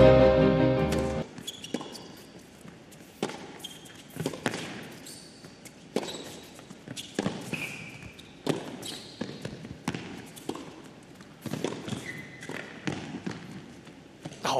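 A musical sting ends abruptly about a second in. Then comes a tennis rally on an indoor hard court: sharp racket-on-ball strikes about every second and a half, with brief high squeaks of shoes on the court between them.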